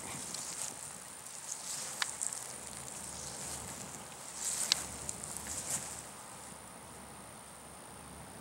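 Outdoor pondside ambience: a steady high-pitched insect drone, with light rustling and two short sharp clicks.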